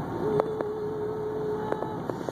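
Steady road and engine noise inside a moving car's cabin. Over it a single mid-pitched tone is held steadily for about a second and a half, with a couple of faint clicks.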